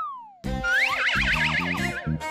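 A cartoon sound effect: a single falling pitch slide that fades out over about half a second. Background music then starts, with plucked bass notes under a high, quickly wavering melody line.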